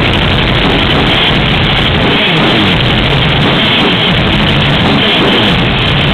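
Black metal band playing live: a loud, unbroken wall of distorted guitars and drums. The recording sounds dull, with no treble above its narrow bandwidth.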